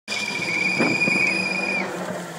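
Engine of a distant VW Polo rally car running hard as it approaches. A steady, high, whistle-like tone sits over it and stops shortly before the end.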